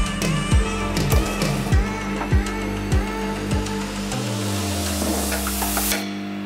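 Background music with a steady kick-drum beat about every 0.6 seconds. In the last two seconds a hiss builds up and a low bass note slides down, and the music drops out right at the end.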